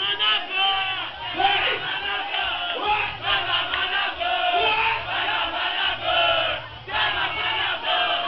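A crowd of many voices shouting and cheering at once, loud and continuous.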